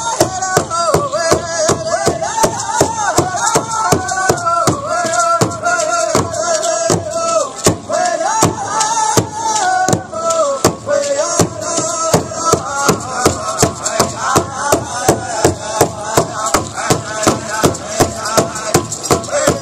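Pow wow drum group playing an intertribal song: a large drum struck in a steady beat about three times a second under high-pitched group singing.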